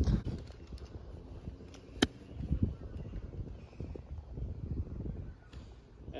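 A 60-degree lob wedge striking a golf ball once in a chip shot, a single sharp click about two seconds in, over low wind noise; the golfer blames the poor shot on not following through.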